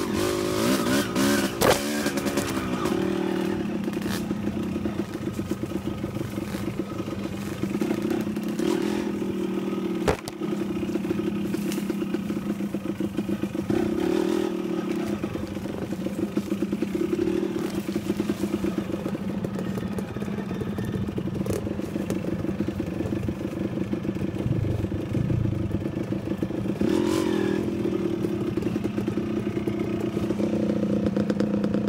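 Dirt bike engine running at low, slightly varying revs while picking through a narrow overgrown trail. A couple of sharp knocks from the bike on rough ground, about two and ten seconds in.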